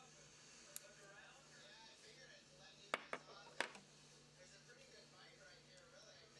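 Near silence with a faint low hum, broken by three short clicks, about a second in and again around three seconds in: a metal pick working vinyl resist off the back of an etched sterling silver strip.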